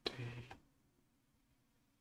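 A man's voice briefly murmuring at the very start, then near silence: faint room tone with a low hum.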